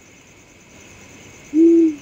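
A single owl hoot, one low steady note of about half a second, about one and a half seconds in, over a faint steady hiss.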